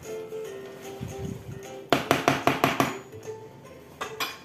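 Background music with steady held notes. About halfway through, a quick run of about eight sharp metallic taps over roughly a second: a metal hand whisk knocked against the rim of a frying pan to shake off thick béchamel dough.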